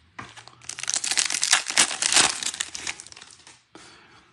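Wrapper of a 2022 Bowman baseball card pack being torn open and crinkled by hand: a dense run of crackling that is loudest in the middle and dies away near the end.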